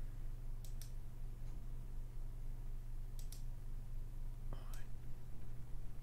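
Computer mouse clicking a few times, in quick pairs near the start and about three seconds in, over a steady low electrical hum. A faint breathy sound comes near five seconds.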